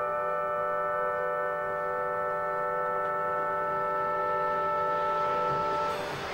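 Orchestra with synthesizer holding one long, steady chord without vibrato; near the end a hissing wash swells in as the chord gives way.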